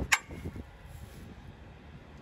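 A single sharp click from the hovercraft's twin-cylinder Polaris two-stroke engine just after the start, at the end of a failed start attempt, then only a faint low rumble. The engine does not fire; the owner suspects the second carburettor, which is bone dry, is getting no fuel.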